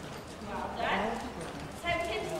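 Ponies' hooves clip-clopping at a walk, with faint voices murmuring.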